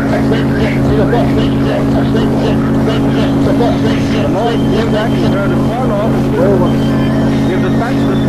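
A steady low drone or hum runs under indistinct, overlapping voices whose pitch wavers up and down, with no clear words.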